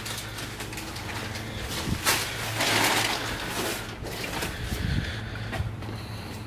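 Plastic wrapping rustling, with light knocks, as a large carbon fibre car hood is handled and lifted; the rustle is loudest in the middle, over a steady low hum.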